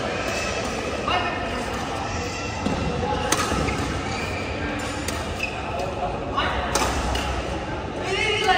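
Badminton racket strikes on a shuttlecock during a doubles rally in a large indoor hall: a few sharp, separate hits a second or two apart. Voices chatter throughout.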